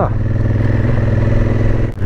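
Honda CRF1000 Africa Twin's parallel-twin engine running steadily as the motorcycle climbs a mountain road, with a brief dip in level just before the end.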